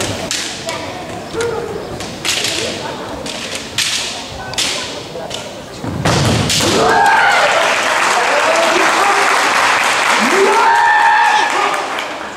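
Kendo bout: sharp knocks of bamboo shinai striking and tapping against each other, with stamps on the wooden floor, then from about six seconds in loud, drawn-out kiai shouts from the fencers as they close in and lock hilt to hilt.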